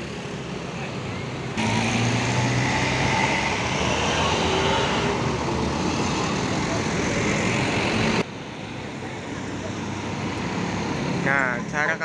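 Road traffic at a busy junction: a truck passing close by with its diesel engine running, loud from about one and a half seconds in and cutting off abruptly about eight seconds in. Afterwards steadier traffic noise builds again as a coach approaches.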